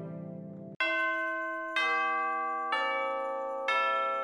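Background music: one piece fades out, then about a second in a bell-like instrument starts striking ringing chords about once a second, each left to die away.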